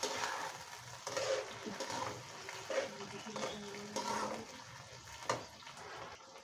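Potato cubes and onions frying in hot oil in an aluminium kadai, sizzling steadily, while a metal spatula stirs them and scrapes and knocks against the pan every second or so, with a sharper knock near the end.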